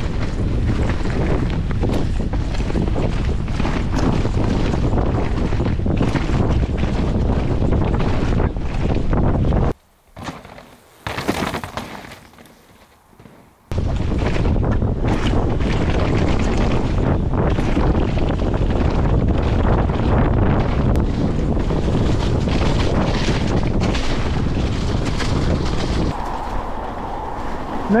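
Mountain bike ridden fast downhill on a rough dirt trail: wind buffeting the camera microphone over a constant rattle and rumble of tyres and bike over the ground. The noise drops away for a few seconds near the middle, then picks up again.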